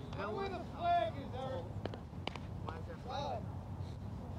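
Players' voices shouting and calling across an open field, unclear as words, with the loudest shout about a second in. A couple of sharp clicks or knocks come just after halfway.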